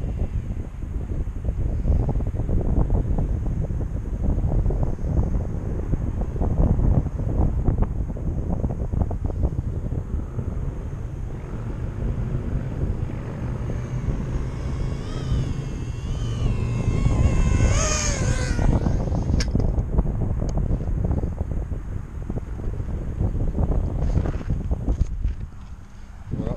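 Wind buffeting the microphone in a steady low rumble. From about twelve seconds in, the high whine of a micro FPV quadcopter's Racerstar 1306 brushless motors on 3S comes in, its pitch wobbling with throttle as it rises and closes in, loudest at about eighteen seconds, then it drops away.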